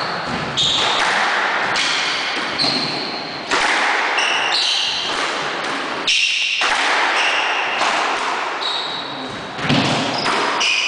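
Squash rally: the ball struck by rackets and smacking off the walls about once a second, with shoes squeaking on the wooden floor, all echoing in the enclosed court.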